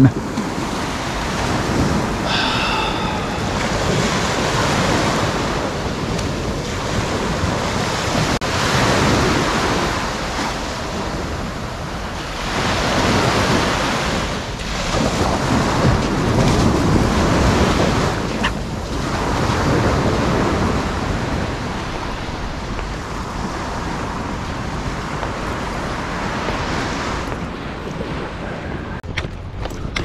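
Sea surf breaking and washing up a sandy beach, swelling and fading every few seconds, with wind buffeting the microphone.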